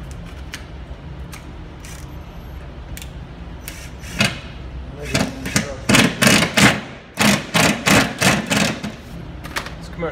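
Cordless drill-driver driving a screw through a cardboard template into 5/8-inch sheetrock, run in short pulses of about three a second from about five seconds in, after a few light handling clicks.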